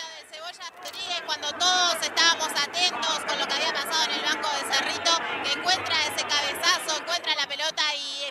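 Rapid radio football commentary, with voices overlapping.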